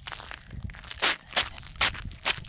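Running footsteps of sneakers on ice-glazed asphalt, a steady stride of about two and a half footfalls a second.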